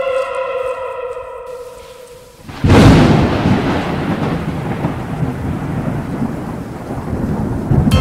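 An edited-in sound effect. A held tone sliding slightly down in pitch fades out. At about two and a half seconds a sudden loud thunderclap follows, with a long rumble that goes on after it.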